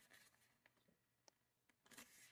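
Near silence, with a few faint rustles and ticks of origami paper being folded and creased by hand.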